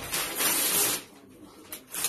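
Wrapping paper being torn open: one loud rip lasting about a second, then a few short rustles near the end.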